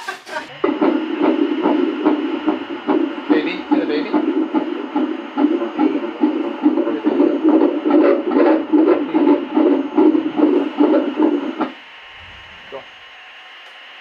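Unborn baby's heartbeat played through an obstetric ultrasound machine's Doppler speaker: a fast, even pulse of beats that cuts off about 12 seconds in.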